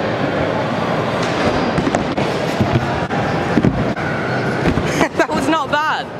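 Stunt scooter's small hard wheels rolling across a skatepark ramp, a steady rumble with a few sharp knocks in the middle. A voice calls out near the end.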